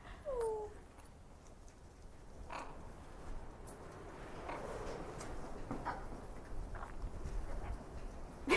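Blue-fronted Amazon parrot giving a short falling call about half a second in, then a few faint clicks as it works at a pistachio held in its foot.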